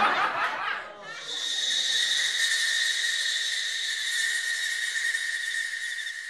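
A brief snickering laugh, then a steady, shrill high-pitched drone holding two even tones over a hiss, continuing to the end.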